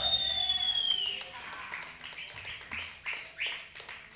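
Small club crowd clapping sparsely and calling out as a doom-metal song ends, over a high whistling tone that fades out in the first second.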